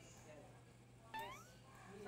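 Near silence, broken about a second in by one short, high-pitched call that rises in pitch and lasts under half a second.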